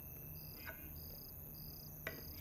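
Crickets chirping faintly, a short high chirp repeating about every half second, with one faint tap about two-thirds of a second in.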